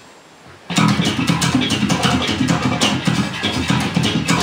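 Solo electric bass guitar. After a brief pause under a second in, it plays a fast run of low plucked notes with sharp, clicky attacks.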